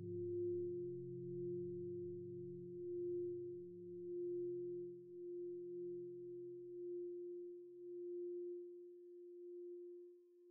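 Slow, sad ambient music fading out: one held tone, gently swelling and sinking, over low drones that die away about nine seconds in.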